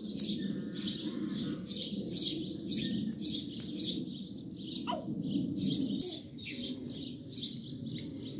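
A small bird chirping over and over, short high chirps about two a second, with one lower falling note about five seconds in, over a steady low hum.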